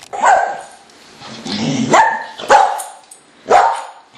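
An animal barking loudly: four short barks, one near the start, two close together about two seconds in, and one near the end.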